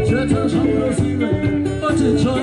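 Live band music: a male vocalist singing over strummed acoustic guitar and hand-drum percussion.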